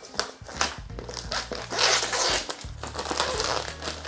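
Clear plastic shrink-wrap crinkling as it is cut and pulled off a cardboard box, over a low steady hum.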